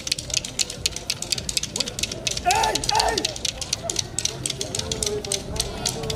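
Voices singing over a fast patter of sharp claps, with a higher voice rising above them about two and a half seconds in.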